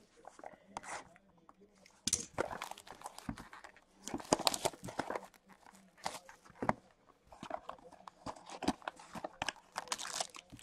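Cardboard trading-card hobby box being handled and opened: slid off a stack, turned in the hands and its lid pulled open, giving irregular scrapes, rustles and sharp crackles, busiest about two seconds in and again around four to five seconds in.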